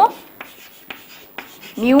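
Chalk writing on a chalkboard: faint scratching strokes with three sharp taps of the chalk against the board, spaced about half a second apart.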